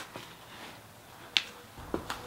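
A single sharp click about a second and a half in, over quiet background.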